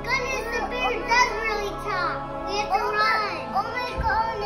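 Young children's voices over steady background music.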